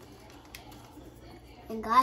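A quiet room with a faint click about half a second in, then a person's drawn-out 'mmm' of enjoyment while tasting food, starting near the end.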